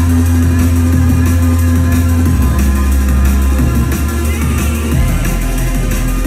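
Loud drum and bass DJ set over a club sound system, recorded on a mobile phone. A heavy sustained bass line changes note about two and a half seconds in and again about five seconds in.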